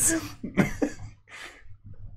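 A person's voice giving a few short, breathy coughs in the first second and a half.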